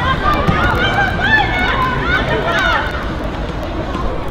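Women footballers' voices calling and shouting across the pitch during play, a run of short high-pitched calls over a steady low rumble.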